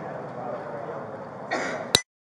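Indistinct murmur of several people talking, then about one and a half seconds in someone clears their throat, and a sharp click just before the sound cuts off.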